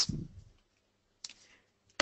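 A pause in a spoken presentation: the end of a word, then a single short click a little past a second in, otherwise quiet.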